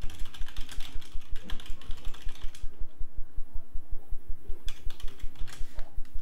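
Computer keyboard typing in quick bursts, thickest in the first couple of seconds and again near the end. A low, regular pulse about five times a second runs underneath.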